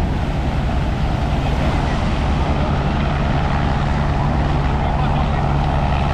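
Helicopter flying low over the surf, a steady low engine and rotor drone over the wash of breaking waves.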